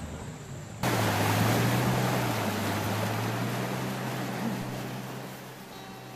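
A longboat's engine running steadily, with water rushing along the hull. The sound cuts in about a second in and slowly fades.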